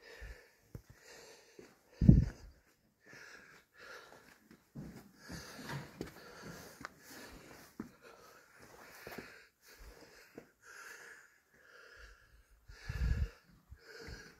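A person breathing hard close to the microphone, short breaths in and out about once a second. Two heavy thumps come through, about two seconds in and near the end.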